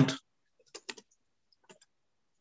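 A few quick clicks of a computer mouse and keyboard keys, a short cluster a little under a second in and a single click near the middle.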